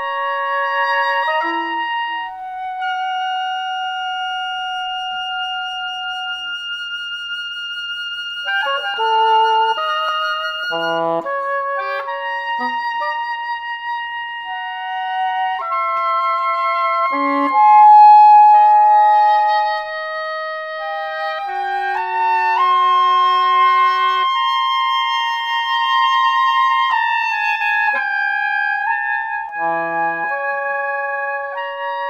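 Oboe duet playing a slow contemporary piece: long held notes in two overlapping lines, with a cluster of quick short notes about nine to twelve seconds in, and the loudest note, held for about two seconds, around eighteen seconds in.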